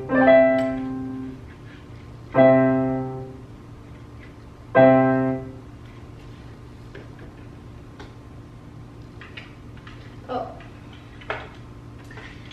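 Donner DEP-20 digital piano playing three chords about two and a half seconds apart, each sounding for about a second and fading away. After that only a few faint clicks are heard.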